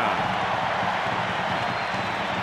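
Large stadium crowd cheering as a steady wash of noise after a first-down run, heard on a television broadcast sound track.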